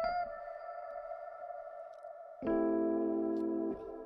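Reverb-drenched Rhodes electric piano patch (Omnisphere's Keyscape "Black Hole Rhodes", an LA Rhodes through K-Verb with subtle pitch modulation) played on a keyboard. A note rings out and fades, then a fuller chord with lower notes is struck about two and a half seconds in and held for about a second. The sound is so washed in reverb that it has too much spaciness.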